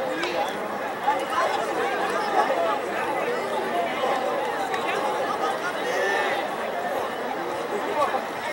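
Many voices talking and calling out at once, a steady chatter of people at the field with no single speaker standing out.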